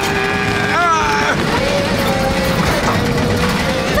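Cartoon sound effect of a tow truck's engine straining steadily against a heavy load as its crane cable pulls, over background music.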